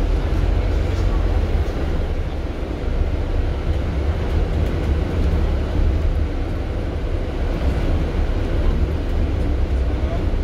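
Double-decker bus driving along a street, heard from inside at the front of the upper deck: a steady, deep rumble of engine and road noise.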